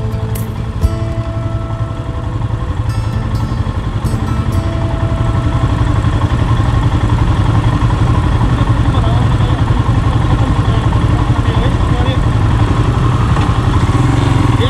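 Royal Enfield Himalayan's 411 cc single-cylinder engine idling steadily, growing louder over the second half. Background music is heard fading out in the first few seconds.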